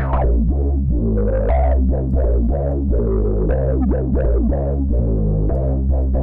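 Softube Monoment Bass sampler-based synth bass playing a repeating bass line, its Dark Monster and Dirt of 1981 sample sources run through a 12 dB/octave low-pass filter. Each note's upper overtones sweep as the filter envelope opens and closes, while the cutoff and envelope settings are being turned.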